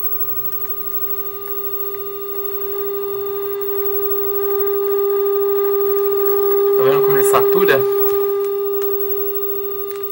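A Philips 14CN4417 CRT television's speaker plays a steady 400 Hz sine-wave test tone picked up from a test transmitter. The tone grows louder in steps over the first seven seconds or so.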